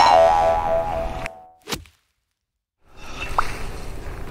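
An edited-in comic sound effect: a loud, ringing musical sting with many pitched overtones that fades out over about a second and a half. A short swish follows, then a second of dead silence at the cut, before faint outdoor background noise returns.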